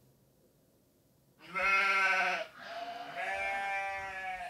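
Sheep bleating after about a second and a half of silence: one loud bleat, then a longer, quieter one.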